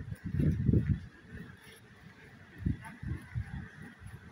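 Wind buffeting a phone microphone outdoors: irregular low rumbling bursts, strongest in the first second and again from near the three-second mark, over a faint steady hiss.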